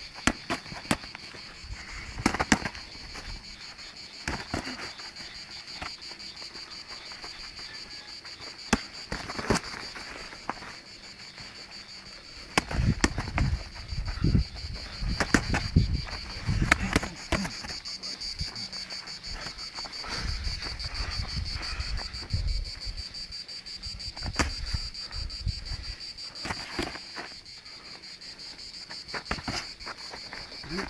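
Boxing gloves landing punches in sparring: sharp, irregular slaps and thuds, thickest in the middle of the stretch, over a steady high-pitched trill of insects.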